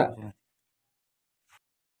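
A man's speech trails off in the first moment, then dead silence follows, broken only by one faint, brief click about one and a half seconds in.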